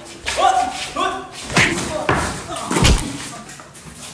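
Fight-scene hits: two short yells, then three hard blows and thuds, the last one the heaviest.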